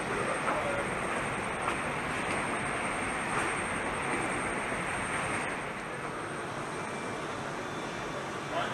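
Steady rushing noise of a large aircraft assembly hall, with a faint high whine that stops about two-thirds of the way through.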